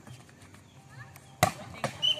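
A volleyball being struck by players' hands: two sharp slaps about a second and a half in, less than half a second apart, the second as a player attacks at the net.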